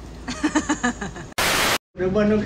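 A person laughing, then a short burst of loud static hiss that cuts off suddenly into a moment of dead silence: an edit-transition noise effect at a scene cut.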